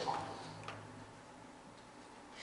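A pause in a man's speech: quiet room tone with a low steady hum and a single faint click about two-thirds of a second in.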